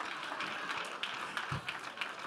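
Scattered, light hand clapping from a seated congregation: a run of short, uneven claps.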